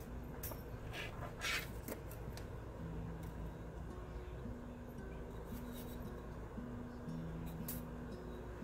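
Faint handling noise of soft aluminium wire being twisted by hand around a bead and glass cabochon: light rubbing with a few small ticks, mostly in the first two seconds and again near the end.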